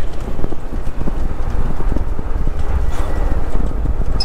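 Low, steady rumble of a semi-truck's diesel engine and road noise heard inside the cab, with a fast, irregular run of short knocks and rattles.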